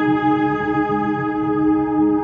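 Calm ambient relaxation music: a steady chord of many tones held unchanged, with a softer wavering layer low beneath it.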